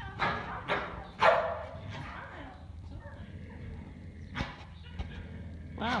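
A dog barking several times in short sharp barks, the loudest about a second in.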